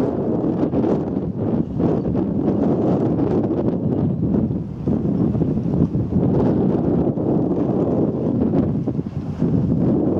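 Wind blowing across the camera's microphone: a loud, steady noise that rises and falls in gusts.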